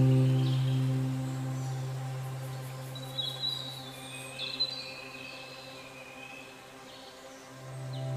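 Ambient background music: a held low note slowly fades, with a few short bird chirps about three to five seconds in, and the music swells again near the end.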